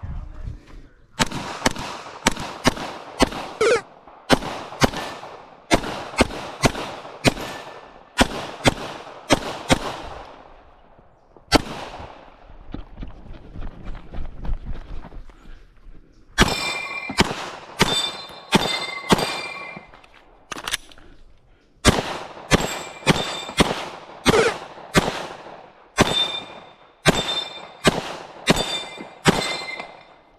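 Rapid strings of gunshots, with a pause of several seconds in the middle broken by a single shot. In the second half the shots come from a 9mm Glock 17 pistol, with steel targets ringing after the hits.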